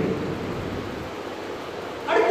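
Steady hiss of background room noise with no voice, with a low rumble that fades out about a second in.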